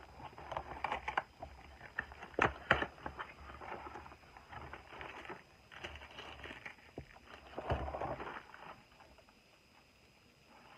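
A cardboard snack-cake box being torn and pulled open by hand: irregular rustling and crackling, with a couple of sharp tearing snaps about two and a half seconds in.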